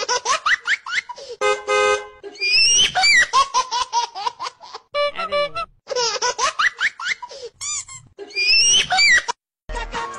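Rapid, high-pitched laughter over music, in quick repeated bursts with a few short breaks, used as the soundtrack of a short dance clip.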